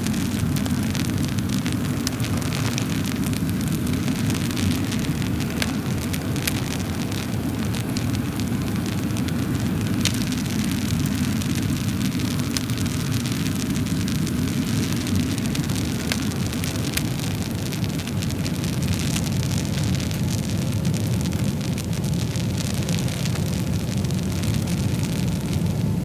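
Wood fire burning in a stove: a steady low rumble of flame with scattered sharp crackles and pops.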